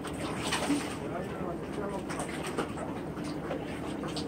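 A distant small boat's engine running steadily over the open-air sea ambience, with short bird calls now and then.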